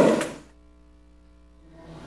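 The last of a man's voice fades away, then about a second of near silence with only a faint, steady electrical hum. Low room noise returns near the end.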